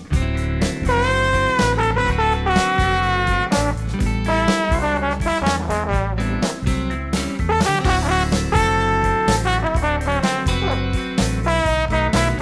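Instrumental break in a swing-style song: brass lines of held and bending notes over a steady rhythm section with guitar.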